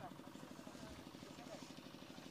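Faint, distant voices of players and spectators on an open ground, with a low steady hum underneath.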